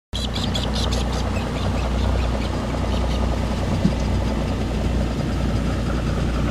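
An engine running steadily with a low, even drone. A rapid run of high chirps sounds in the first second, and there is one brief knock about four seconds in.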